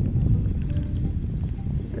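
Wind rumbling on the microphone, with faint music and a few light high ticks over it.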